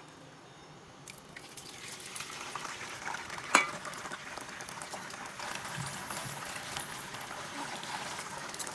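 Cubes of firm tofu (taukwa) sizzling and crackling in hot oil in a frying pan. The sizzle starts about a second in and grows. There is one sharp knock about three and a half seconds in.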